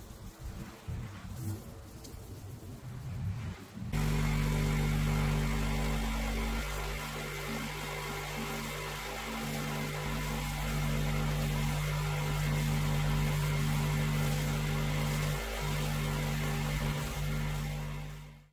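Pressure washer with a rotary surface cleaner on concrete: from about four seconds in, it runs loud and steady, the hum of the machine under a hiss of water jetting onto the slab. Before that, a quieter, uneven sound.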